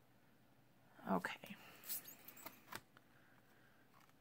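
A few small, sharp clicks and taps: a round magnet set down onto the stamp positioning tool's metal base to hold the paper, with fingers handling the tool.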